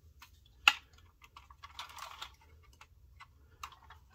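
Handling of a 1/18 scale diecast model car: scattered light clicks and taps of fingers and moving parts on the model, with one sharper click about two-thirds of a second in and a short scraping noise around two seconds in.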